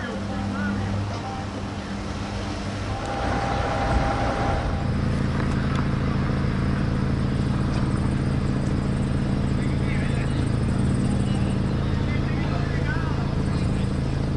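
Steady low hum of idling vehicle engines, growing fuller about five seconds in, with faint voices now and then.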